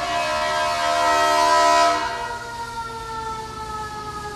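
A passing vehicle's horn sounds a held chord of several tones. It is loudest in the first two seconds, then sinks slowly in pitch and fades as it moves away.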